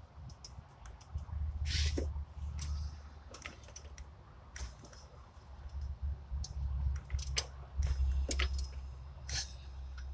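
Compression air puffing out of cylinder one's spark plug hole past a fingertip as the Ford small-block Windsor V8's crank is turned by hand and the piston rises on the compression stroke toward top dead center, with scattered clicks of the wrench working the crank bolt.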